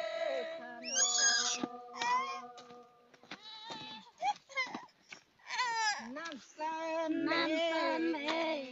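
Women's voices singing in the Red Dao folk style, the pitch sliding and wavering, with short breaks in the line, over a steady held tone underneath.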